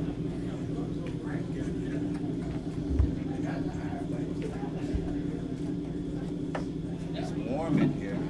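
A steady low hum from the band's stage amplification between songs, under faint murmuring voices, with two low thumps about three and five seconds in, the first the louder.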